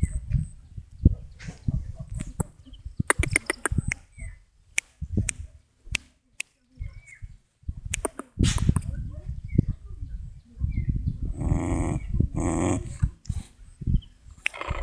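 A dog whining in two drawn-out calls, among scattered knocks and rustles.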